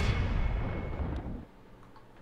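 A deep boom closing the intro music, which fades out over about a second and a half to near silence.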